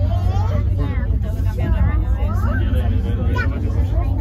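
Passengers chatting inside a crowded aerial cable car cabin over the cabin's steady low running rumble as it travels down the cable.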